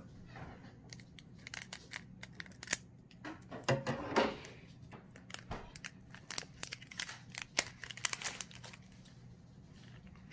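Scissors snipping through a foil Pokémon booster-pack wrapper, followed by the wrapper crinkling as it is pulled open. There is a series of short, sharp snips and crackles, and the loudest cluster comes about four seconds in.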